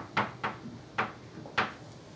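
Chalk striking a blackboard while figures are written: about five short, sharp clacks, unevenly spaced.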